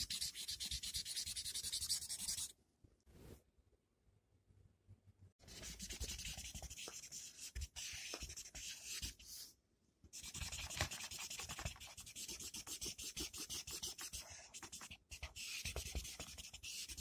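Felt-tip marker colouring on paper in quick, scratchy back-and-forth strokes. The strokes stop about two and a half seconds in, start again about three seconds later, and pause once more briefly near ten seconds.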